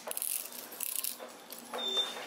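Metal chain leash clinking and jingling in the hands as it is put on a dog, with scattered light clinks.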